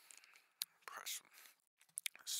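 A faint whispered voice in short, broken fragments, with no beat underneath.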